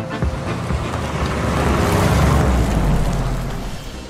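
A car driving past: a rushing noise with a low rumble that swells to a peak about two seconds in and then fades away.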